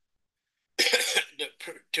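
A man's cough: dead silence, then one short, abrupt cough about a second in, followed by the first syllables of his speech.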